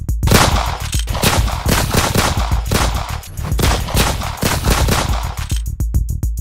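Rapid gunfire, a fast string of sharp shots lasting about five seconds, over a drum-machine beat.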